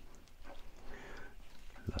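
Faint, scattered sounds of a sharp knife cutting raw chicken thigh along the bone, against a wooden cutting board. A man's voice starts near the end.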